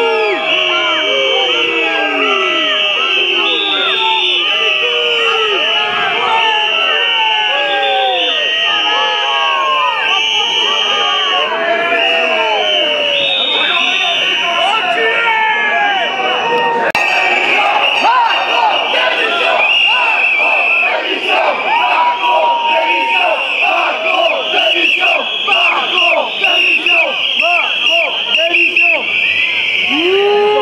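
A large crowd of protesters shouting and chanting, many voices overlapping, over a steady shrill high tone. The din grows louder and more ragged about two-thirds of the way in.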